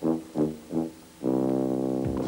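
Advert music on a low brass instrument: three short notes, then one long held note.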